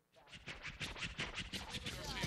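DJ scratching a vinyl record on a turntable, rapid back-and-forth strokes at about six to eight a second. It starts suddenly out of quiet and builds in level as hip-hop music comes in.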